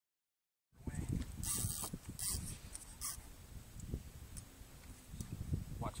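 Low wind rumble on a phone microphone, with three short hissing bursts about a second and a half, two and a quarter, and three seconds in.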